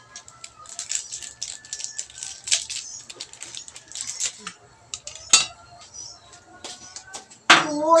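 Crackling, rattling clicks as instant-noodle seasoning is shaken from its sachet and sprinkled over the noodles in a pot, dying away after about four seconds. A single sharp knock follows about five seconds in.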